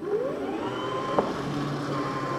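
Makita DLM539 cordless self-propelled lawn mower's electric motor spinning up with a rising whine, then running at a steady pitch as the rear-wheel drive pulls the mower forward at a slow speed setting. A short click comes about a second in.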